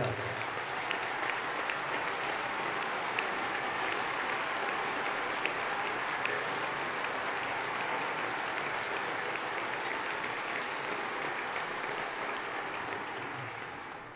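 Large assembly of parliamentarians applauding, a dense steady clapping that dies away near the end.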